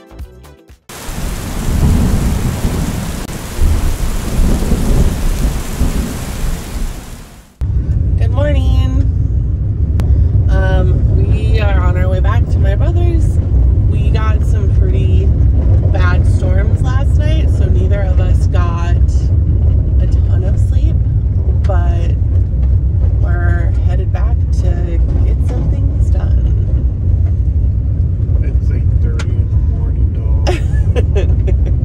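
Loud steady hiss of sanding on a wooden countertop, which cuts off abruptly about seven seconds in. It is followed by the steady low road and engine rumble inside the cab of a moving Ram Promaster cargo van.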